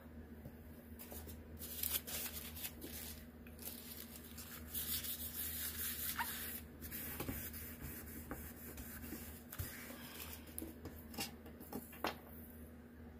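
Faint rustling and rubbing of paper as a tissue is dabbed and wiped over glossy photo paper and the sheet is moved, with a few light taps. A low steady hum sits underneath.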